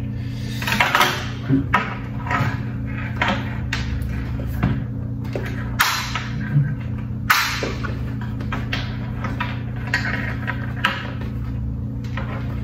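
Handling noise from a Gille full-face motorcycle helmet being turned over and examined: scattered clicks, taps and rustles, several of them sharp, over a steady low hum.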